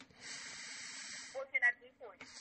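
A soft, steady hiss on a phone line lasting about a second, followed by two brief faint voice sounds.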